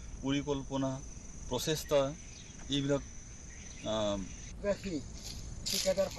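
A steady, high-pitched insect drone runs under the on-location sound, broken by short phrases of a man's voice.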